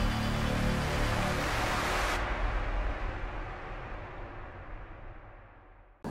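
Cinematic logo-intro sound effect: a dense whooshing swell over a deep rumble. The high end cuts off abruptly about two seconds in, and the remaining rumble fades out to almost nothing.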